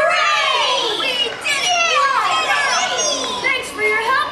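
A crowd of young children shouting and calling out together, many high voices overlapping.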